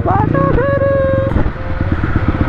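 Honda CRF450's single-cylinder four-stroke engine running at low revs in slow traffic, a steady rapid pulsing throughout. Over it a voice rises and then holds one drawn-out note for most of the first second and a half.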